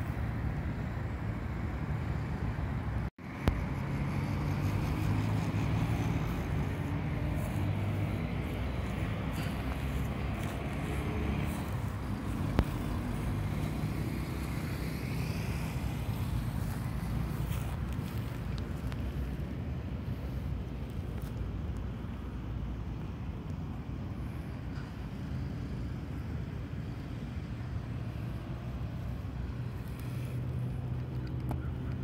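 Steady road traffic from the nearby streets and overpass, a continuous low rumble of passing cars. The sound cuts out briefly about three seconds in, and there is one sharp click near the middle.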